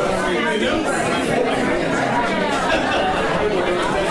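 Many people talking at once: steady, overlapping, indistinct conversation of an audience mingling during a break.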